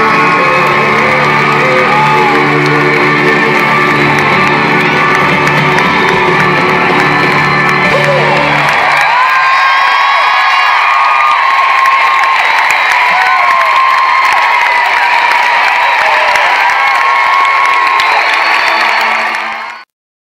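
Loud live pop music with an arena crowd cheering and whooping over it. The music's low end stops about halfway through, leaving the crowd's cheers and high whoops, which go on until the sound cuts off abruptly just before the end.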